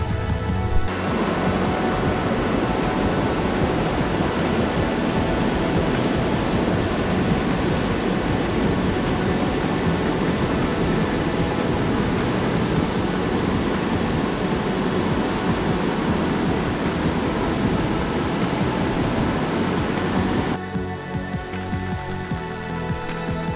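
Rushing mountain stream tumbling over boulders: a steady, dense rush of water that starts suddenly about a second in and cuts off shortly before the end, with background music underneath.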